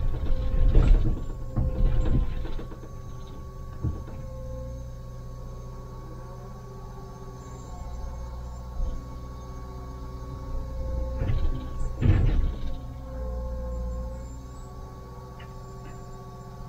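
Liebherr 904 wheeled excavator's diesel engine running steadily, heard from inside the cab, with a steady whine from the hydraulics. Bursts of rock scraping and clattering against the bucket come in the first few seconds and again about twelve seconds in.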